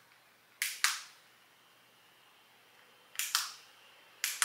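Plastic mode button on a small handheld personal fan clicked twice in quick press-and-release pairs, once about half a second in and again near the end, as the fan's modes are switched.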